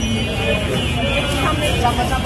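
Din of a crowded market street: several voices overlapping over a steady low traffic rumble.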